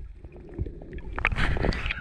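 Muffled underwater water noise from a camera held just below the surface, then splashing and sloshing, loudest a little past the middle, as the camera comes up out of the water.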